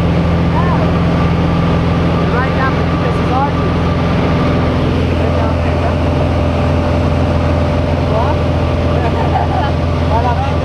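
Steady drone of a small single-engine high-wing jump plane's engine and propeller, heard from inside the cabin while climbing, with faint voices talking under it.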